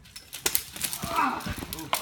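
A climber taking a lead fall: a rapid clatter of climbing gear and rope with a heavy thud about a second and a half in, and a shout from the climber through the middle.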